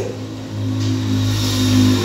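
A motor engine running steadily, its hum growing louder from about half a second in.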